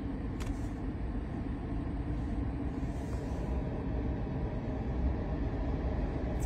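Jeep Grand Cherokee's air suspension lowering the parked vehicle: a steady low rumble in the cabin, with a light click about half a second in.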